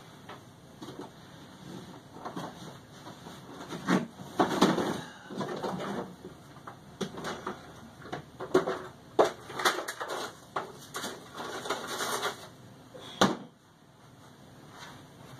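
Irregular handling noises of objects being moved on a desk: rustling and light knocks, with one sharp click near the end.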